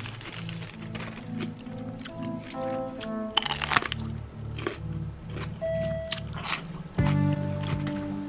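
Background music with repeating chords, and a crisp crunch about three and a half seconds in as a small raw pepper is bitten into, followed by chewing.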